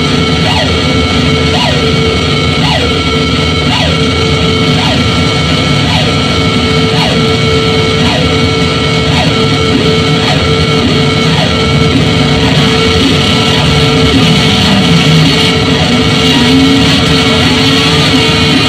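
Harsh electronic noise music from a tabletop rig of effects pedals and a mixer: a loud, dense wall of noise over a steady drone, with a falling chirp repeating about once a second. A wavering low tone rises in the last few seconds.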